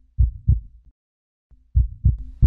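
Heartbeat sound effect: low double thumps in a lub-dub rhythm, one pair near the start and the next beginning near the end.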